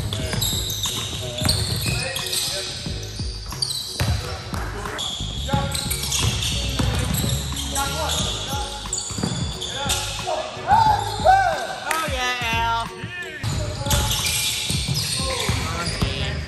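A basketball being dribbled and bouncing on a hardwood gym floor, with sneakers squeaking around two-thirds of the way in and players' voices in the background, echoing in a large gym.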